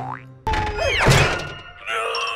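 Cartoon comedy sound effects over background music: a quick falling glide and a thud about a second in.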